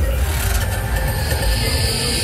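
Loud fairground ride music with a heavy bass beat, played over the ride's sound system and mixed with a dense noisy rush of ride and crowd sound.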